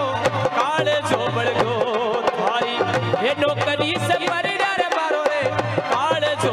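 Live Rajasthani folk music: a dholak drum beats a quick, steady rhythm with deep bass strokes under a harmonium and a wavering, ornamented sung melody.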